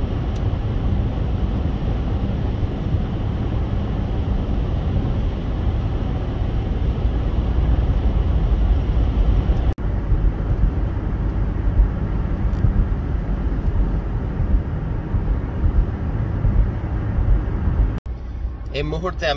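Steady road and tyre noise with engine hum from inside a moving car's cabin, heaviest in the low range. The sound drops out for a moment about ten seconds in.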